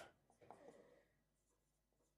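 Near silence, with a few faint marker strokes on a whiteboard about half a second in.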